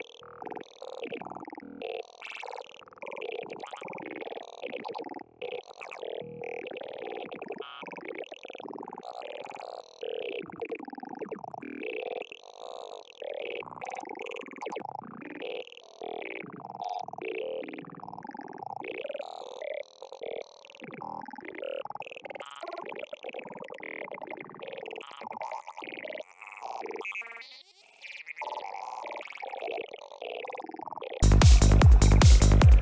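Serum software synthesizer playing a gurgling wavetable through a formant filter, heard on its own: a continuous stream of short synth sounds whose pitch and tone keep shifting.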